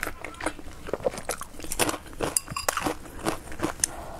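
Close-up mouth sounds of a person chewing a mouthful of rice and stir-fried vegetables, with many short, irregular wet clicks and smacks.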